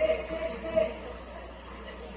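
Faint, distant voices over a low background hum.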